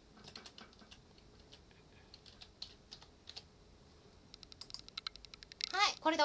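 Password being typed on a computer keyboard: scattered key clicks, then a fast run of keystrokes at about ten a second near the end.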